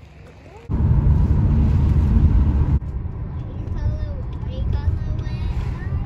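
A loud, low rushing noise that starts suddenly about a second in and cuts off partway through. It gives way to the steady road noise of a moving car heard from inside the cabin, with faint voices.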